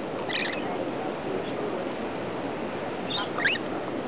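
Rainbow lorikeets giving two short, high squawks, one just after the start and another a little after three seconds, over steady background noise.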